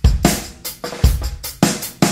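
Background music: a drum kit playing a beat of kick, snare and cymbal hits, with a kick drum about once a second.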